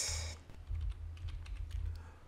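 Typing on a computer keyboard: a quick run of keystrokes as a word is typed into a text field, over a low steady hum.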